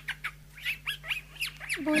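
A bird chirping in quick short chirps, about five a second.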